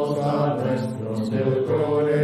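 Male voices singing a slow, sustained sacred chant, with long held notes.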